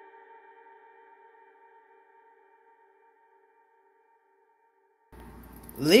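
A held chord of several steady electronic tones fading out slowly at the end of a music track, dying away to near silence; a voice starts just before the end.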